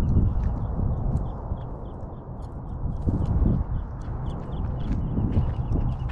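Wind buffeting the microphone with an uneven low rumble, while a small bird in the scrub repeats short high chirps, about three a second.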